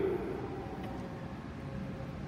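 Automated people-mover train pulling into the station behind glass platform screen doors: a steady running noise with a faint whine.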